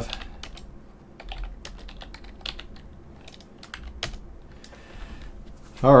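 Typing on a computer keyboard: a run of irregularly spaced key clicks as a line of code is entered.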